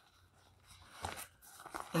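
Crinkly rustling of a small nylon zippered stuff sack being handled and unzipped, starting about a second in and growing busier towards the end.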